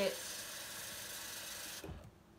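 Kitchen tap running water into a sink as dish soap is squeezed into the stream, a steady rushing hiss that cuts off suddenly near the end.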